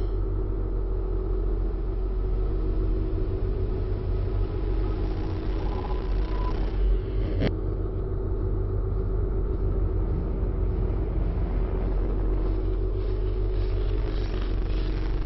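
A steady low rumbling drone with static whooshing over it. The hiss swells for a couple of seconds around the middle, and a single sharp click comes about seven and a half seconds in.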